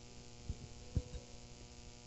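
Steady low electrical mains hum from the sound system during a pause in the speech, with two faint low thumps about half a second and one second in.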